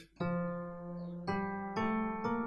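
Keyboard playing the first notes of the F major scale one at a time, rising from F. The first note is held for about a second, then the next notes come about half a second apart.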